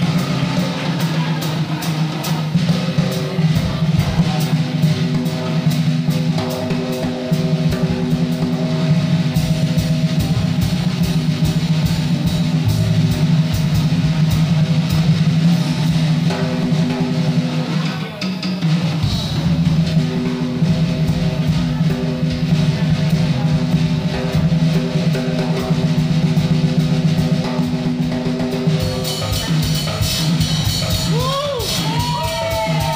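Live blues trio playing, with the drum kit to the fore: busy snare and bass drum under sustained electric bass and electric guitar notes.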